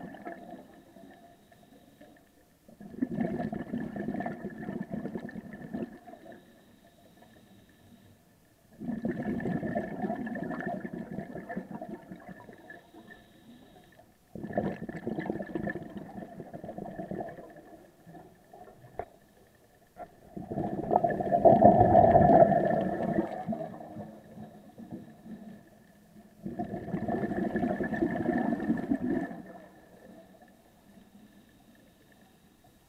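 Scuba regulator exhaust bubbles from a diver's breathing, heard underwater: five bursts of bubbling rumble, each about three seconds long, every five to six seconds, with quiet gaps for the inhalations in between.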